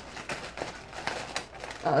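Hands picking and pulling at sellotaped packaging to get it open: a few short crinkles and clicks, spaced out.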